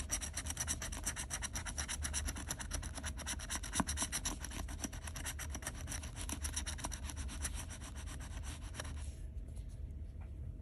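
A metal scratching tool scraping the coating off a scratch-off lottery ticket in rapid, repeated strokes, stopping about nine seconds in.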